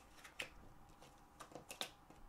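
Tarot cards being handled on a tabletop: a few faint clicks as cards are set down and slid into place, one about half a second in and several close together near the end.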